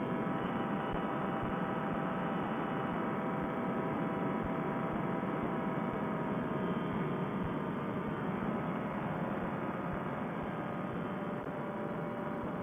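Steady drone of a Fresh Breeze Monster two-stroke paramotor engine and propeller running at cruise power in flight. It is muffled and thin, as picked up by a helmet headset microphone.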